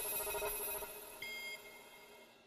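Closing notes of a logo jingle: a held electronic tone from the start, joined by a higher bell-like chime about a second in, both fading away.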